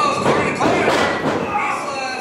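A few heavy thuds on a wrestling ring as two wrestlers grapple and break apart, in the first second or so.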